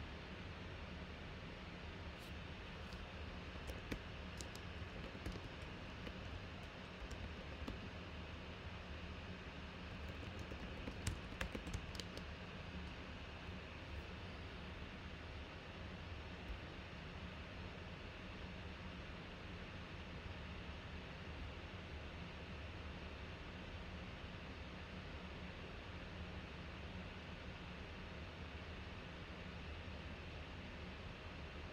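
Scattered light clicks, most of them in a quick cluster about ten to twelve seconds in, over a steady low hum and hiss.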